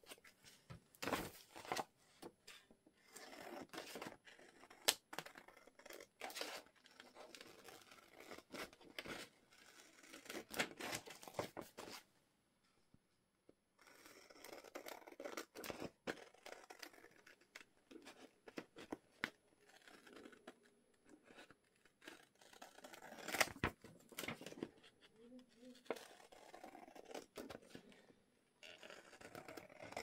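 Scissors snipping through a book page, with paper rustling and crinkling as the sheet is turned and handled. The sound is faint and comes in short, irregular spells, with a brief pause about twelve seconds in.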